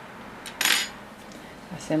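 A short clatter of a metal knitting needle, one brief rattle about half a second in, as the needle is handled while new yarn is joined to the knitting.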